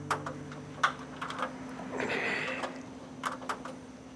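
Irregular light clicks and taps of hand tools being worked on an air-conditioning unit, with a short rattle about two seconds in and a faint steady hum underneath.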